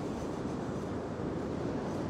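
Wind noise on the microphone over the steady wash of ocean surf.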